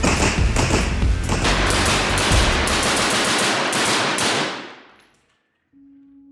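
Rapid rifle fire, many shots in quick succession, mixed with background music carrying a steady low bass. It all fades out about five seconds in.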